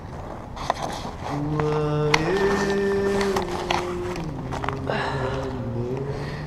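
A man's voice held in a few long, low hummed notes that step in pitch, with a couple of sharp knocks from climbing on concrete.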